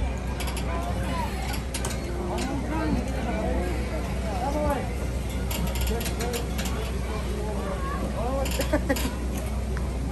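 Clusters of sharp metallic clicks and rattles from climbing-harness lanyards and carabiners on an overhead steel safety cable as a climber moves along a ropes-course element, with voices in the background.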